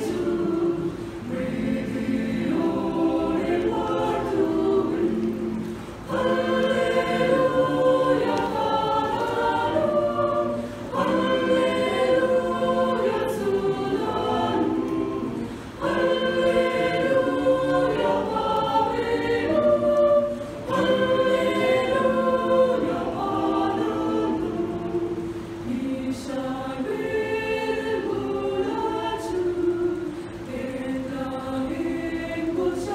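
Mixed choir of women's and men's voices singing a Malayalam Christmas hymn, with a short break between phrases about every five seconds.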